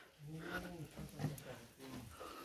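A faint, distant voice in short stretches, echoing in the cave passage.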